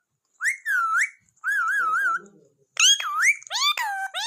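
Rose-ringed parakeet whistling: a sweeping up-and-down whistle, then a wavering whistle with a few quick wobbles, then a run of short rising calls near the end.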